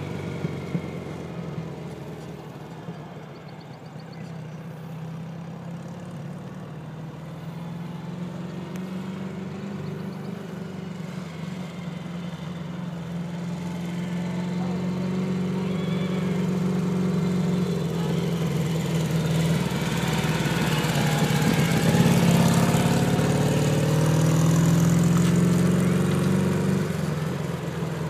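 Sidecar motorcycle engine running as the outfit circles. It is fainter early on and grows louder over the second half as it comes nearer, its pitch rising and falling a little with the throttle.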